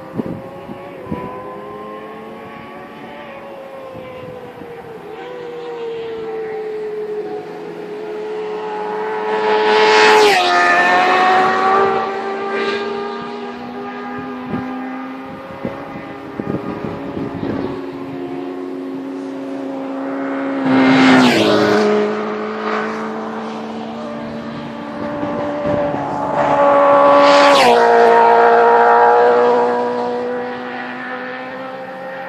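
A motor vehicle's engine running at high revs as the vehicle circles close by. It passes three times, about ten seconds in, about twenty-one seconds in and near the end. Each time the engine grows loud and its pitch drops as it goes by, and the last pass is the loudest.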